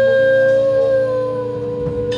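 Live experimental rock music: one long held high note, sagging slightly in pitch near the end, over low droning notes.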